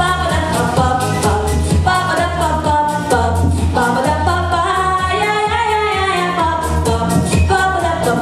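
A girl singing a pop song into a microphone over a backing track with a steady beat, holding several long notes.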